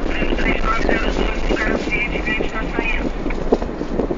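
Steady rumbling road noise of a moving car, with frequent small knocks and rattles. A high, wavering voice-like sound runs over it until about three seconds in.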